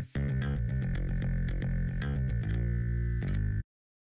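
Background music with distorted electric guitar, cutting off suddenly about three and a half seconds in.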